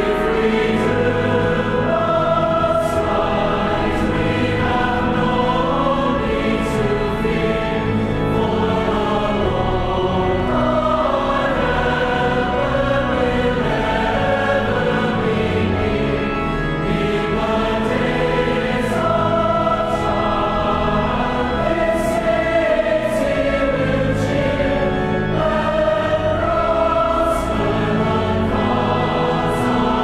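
Choral music: a choir singing a slow sacred piece in sustained, held notes.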